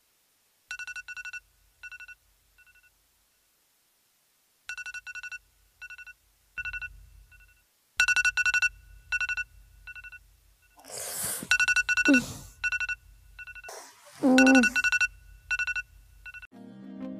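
An electronic phone ringtone: groups of fast, high beeps repeat about every four seconds over a low hum. A person laughs near the end.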